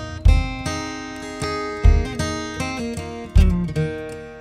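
Acoustic guitar playing a folk accompaniment between sung lines, with a strong low strum about every second and a half under ringing sustained notes.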